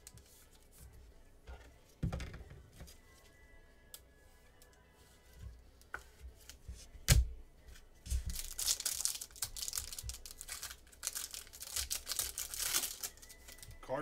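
A thump about two seconds in and a sharp knock about seven seconds in, as the card box is handled. Then several seconds of dense crackling and tearing as the wrapping on a pack of trading cards is torn open and crinkled.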